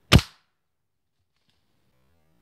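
A single gunshot from the long gun aimed up into the tree, one sharp crack just after the start that dies away within a quarter second.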